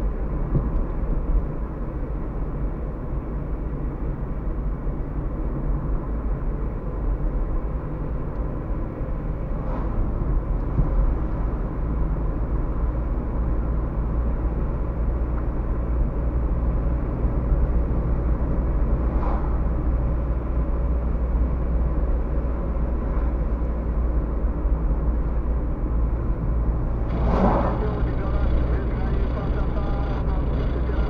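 Car driving along an asphalt road, heard from inside the cabin: a steady low rumble of tyres and engine. There are a couple of faint short sounds midway and a louder brief sound of about a second near the end.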